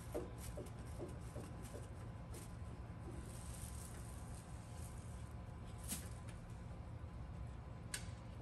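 Faint clicks and light scraping of a screwdriver backing a small screw out of a car door's belt molding, over a low steady room hum. A sharper click comes about six seconds in.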